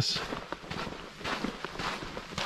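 Footsteps of a hiker walking on a dirt forest trail, a steady series of soft steps.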